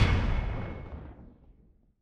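Logo-sting sound effect: an impact hit whose full-range tail fades steadily away, dying out to silence near the end.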